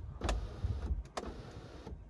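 Electric sunroof motor running as the glass roof panel moves, with a couple of sharp clicks, and stopping just before the end.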